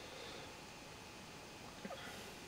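Quiet room tone, a faint steady hiss, with one brief soft sound near the end.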